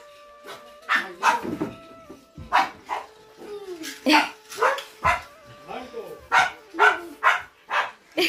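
A long run of short barks, one to two a second, in uneven groups with brief pauses between them.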